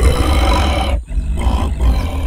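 A deep, rumbling roar-like cartoon creature vocal, in two long parts with a short break about a second in.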